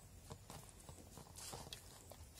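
A hand squeezing and kneading sticky jackfruit dough with flour in a steel bowl: faint, irregular wet squelches and small clicks.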